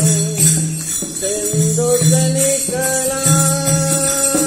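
Shiv bhajan, a Hindi devotional song: a melody that glides between notes and then settles on a long held note, over a steady beat with percussion.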